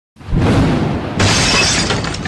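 Glass-shattering sound effect, loud and bright, hitting with a low boom about a second in after a rumbling noise that starts at the very beginning; it is the hit of an animated logo intro.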